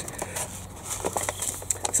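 Paper seed packet rustling as it is handled, with a few short crackles.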